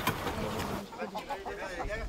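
Faint, higher-pitched voices of children talking in the background, with a sharp knock at the very start and light handling noise in the first second.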